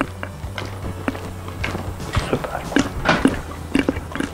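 Background music with a steady low hum, over irregular soft knocks and squishes of yeast dough being kneaded by hand in a glass bowl.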